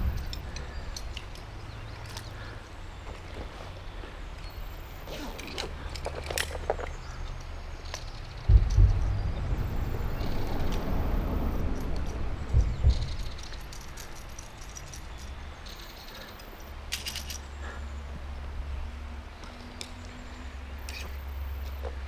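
Handling noise from an action camera being moved and set up by hand: knocks and clicks with low rumbling on the microphone, over shallow river water being stirred. A heavy thump comes about eight and a half seconds in, followed by a few seconds of sloshing.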